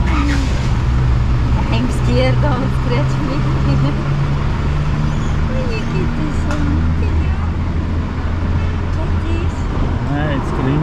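Steady low hum of road traffic or an idling vehicle engine, with people's voices talking in the background.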